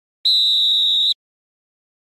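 A single steady, high-pitched whistle blast, just under a second long, starting and stopping abruptly.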